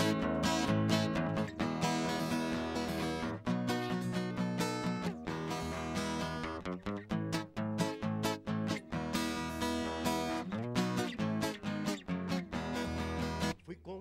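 Steel-string acoustic guitar strummed, playing the instrumental intro of a song, with a brief break near the end before the next phrase.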